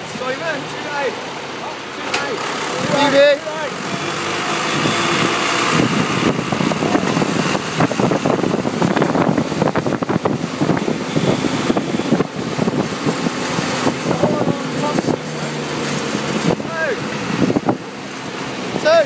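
John Deere 2030 tractor engine running steadily as it tows a trailer along the road, with tyre and road noise; short bits of voices near the start and near the end.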